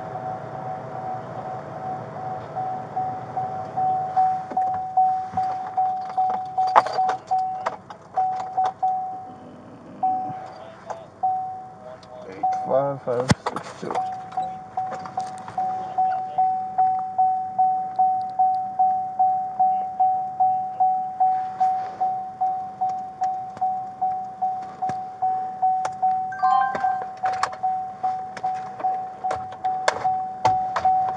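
A patrol car's electronic warning chime repeating steadily at about two chimes a second, with a short break in the middle. Light clicks and taps from the laptop keyboard come over it.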